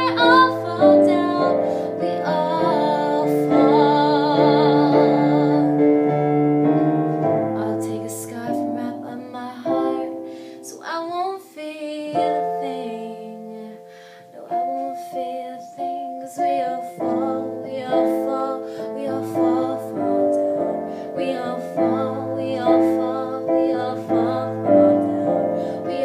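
A woman singing while accompanying herself on piano: sustained chords under long held vocal notes with vibrato. The music thins and drops in level around the middle, then the piano chords pick up again.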